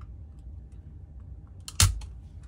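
Spring-loaded desoldering pump (solder sucker) firing once near the end with a single sharp snap as it sucks molten solder off a resistor's joint, over a faint low hum.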